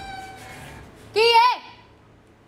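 A cat meowing once, about a second in: a short, high, wavering cry.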